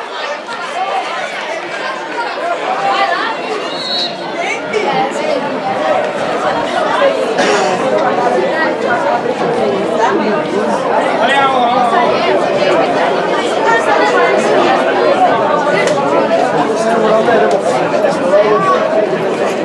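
Spectators chattering: many voices talking over one another at once, fairly loud and steady.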